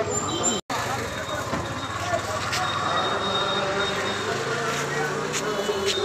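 Many voices talking at once over a steady low rumble, the sound cutting out for an instant about half a second in.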